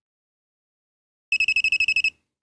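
Silence, then about a second in a fast run of high electronic beeps, about fifteen a second, for under a second. This is the CAME-TV Mini 3-axis gimbal's beeper as it is switched back to standard mode.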